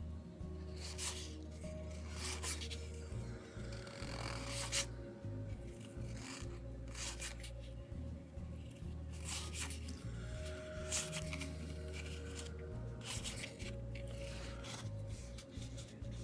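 Cardboard baseball cards slid and flicked one after another through a stack by hand, a series of short dry swishes and rubs, over quiet background music with a steady low bass.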